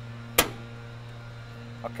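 Eaton 200-amp main utility-disconnect circuit breaker thrown off by hand: one sharp snap about half a second in, over a steady low electrical hum. Throwing this breaker cuts utility power and starts the standby generator's start sequence.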